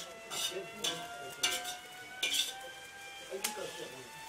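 A metal spatula scraping and stirring dry shredded meat in a large metal wok, about five short scrapes at uneven intervals.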